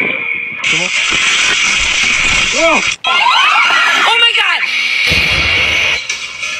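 Voices from played-back fail video clips: people shouting and exclaiming over a steady background hiss, with a brief cut about halfway through where one clip gives way to the next.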